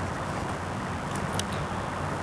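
Steady wind noise on the microphone, with a brief crinkle of nylon drysuit fabric being pulled on about a second and a half in.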